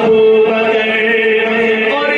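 A man's solo voice singing a devotional Urdu manqabat, holding one long, steady note.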